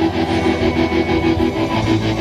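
Live pop-rock band music through a large PA: electric guitar and drum kit playing a steady quick beat, with no vocal.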